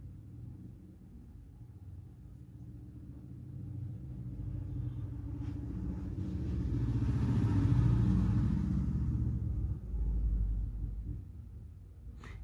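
A low background rumble that builds over several seconds, is loudest about two-thirds of the way in, then fades.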